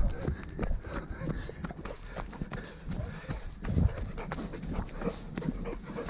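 Running footfalls on a dirt forest trail: a quick, uneven patter of thuds, with low rumbling handling noise from a camera bouncing on the runner.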